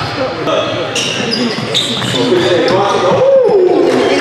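Basketball dribbled on a hardwood gym floor, with brief high sneaker squeaks and players' and spectators' voices echoing around the gym, the shouting growing louder in the second half.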